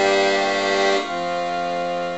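Piano accordion playing sustained chords, the held chord changing to another about a second in.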